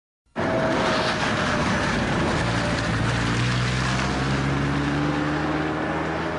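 A car engine running under a loud, steady rush of noise. The sound cuts in abruptly at the start, and a low engine tone rises slowly through the second half.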